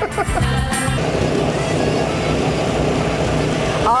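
Brief laughter over music, then a steady outdoor background noise with a low rumble, like traffic and open-air noise on a field microphone, lasting about three seconds.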